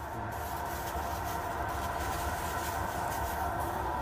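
Steady rumble and hum of commercial kitchen equipment, such as the extractor hood and the burners under the stockpots, running without a break.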